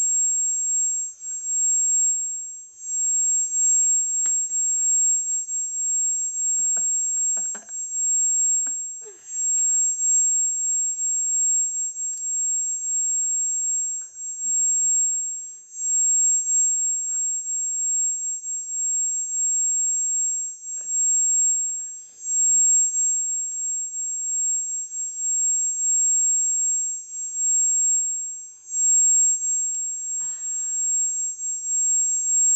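A continuous high-pitched electronic whine that rises and falls somewhat in loudness, with faint scattered mouth and hand sounds beneath it.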